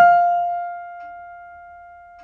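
A single high piano note, sounded once and held, slowly fading away with no other sound. It is picked out on a keyboard to find the pitch of a singer's high note.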